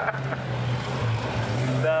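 Volvo estate car's engine running at a steady pitch as the car is driven through a corner, with a brief dip in pitch about a second in.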